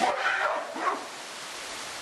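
A gorilla gives a short, loud, rough call in the first second, with a brief second cry a little later. This is typical of the aggression when a new silverback meets the group's females.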